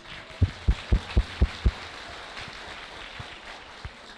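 Audience applause. In the first two seconds there is a quick run of about six low thumps on the handheld microphone.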